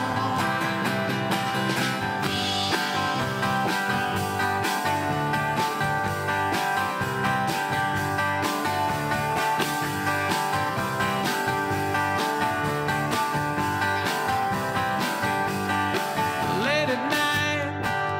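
Live country-folk band playing an instrumental break: steel-string acoustic guitar leading over electric bass and a drum kit keeping a steady beat.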